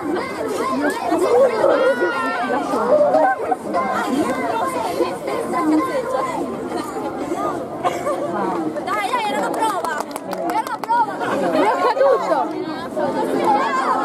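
Several people chattering and talking over one another, with a quick run of sharp clicks about two-thirds of the way through.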